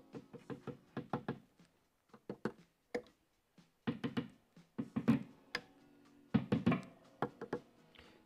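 Quick clusters of sharp taps as a screwdriver taps the P-90 pickups of a 1967 Gibson ES-125TDC, testing the freshly soldered wiring. The taps come in about four bursts, each tap ringing briefly.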